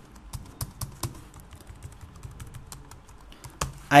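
Computer keyboard typing: a quick, irregular run of keystroke clicks.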